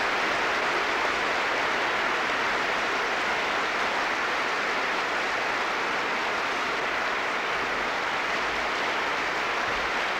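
A large audience applauding steadily, a dense, even clapping, heard on an old cassette-tape recording.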